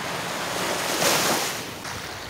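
Small waves breaking and washing up on a sandy beach. One rushing swell peaks about a second in and then fades.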